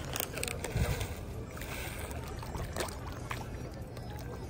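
Lake water splashing and sloshing, with several short splashes, as a shoal of fish feeds at the surface.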